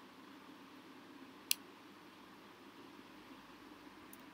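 Faint steady room hiss with a single sharp click about one and a half seconds in, the click of a computer being worked.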